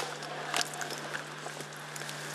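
Dock leaves rustling and crackling as they are torn off their stems by hand, with a few sharp crackles about half a second in, over a steady faint hum.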